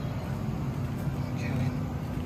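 Supermarket ambience: a steady low hum with faint background voices.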